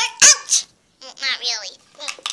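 A child's voice imitating a small dog: two quick high yips, then a longer yelp that falls in pitch.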